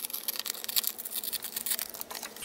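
A scrap of paper coated with repositionable adhesive being torn by hand and handled, giving a string of irregular light crackles and rustles.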